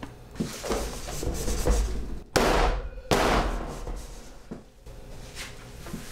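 A filled wooden soap mold handled and jostled on a metal worktable: rough scraping and knocking, with a loud burst of about a second midway.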